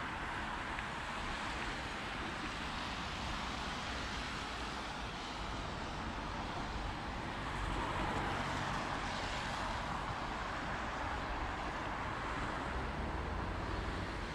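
Road traffic on wet asphalt: a steady hiss of tyres with a low rumble, swelling for a couple of seconds about eight seconds in.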